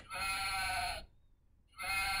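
A recorded sheep bleat played by a wooden farm-animal sound puzzle as its sheep piece is pressed: a click, then one bleat lasting about a second, and a second bleat starting near the end.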